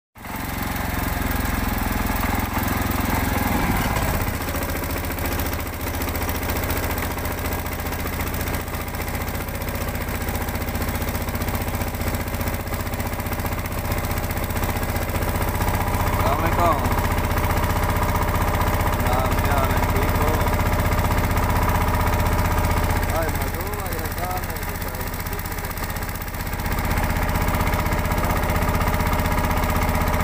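A boat's engine running steadily with an even drone, easing off slightly for a few seconds near the end. Voices are briefly heard over it now and then.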